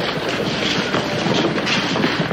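A crowd of people moving about after a court session: shuffling footsteps and indistinct murmured chatter, a dense, continuous clatter of small knocks.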